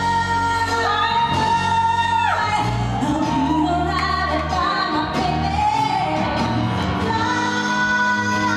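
A woman belting a show tune live into a handheld microphone over instrumental accompaniment. She holds a long high note that falls away in a downward slide about two and a half seconds in, then sings on.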